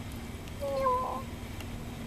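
A single short call, about half a second long, slightly falling in pitch, about halfway through.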